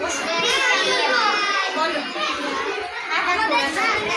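Many young children's voices at once, calling out and talking together over each other.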